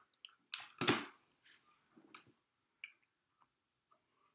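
Acrylic stamp block and inked photopolymer stamp handled at the desk: a few light clicks and taps, the loudest about a second in, then fainter ones.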